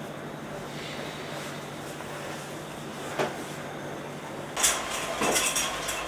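Quiet room hum, a single knock about three seconds in, then a run of clattering and clinking near the end.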